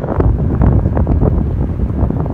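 Wind buffeting the microphone: a loud, uneven low rumble that swells about a quarter second in.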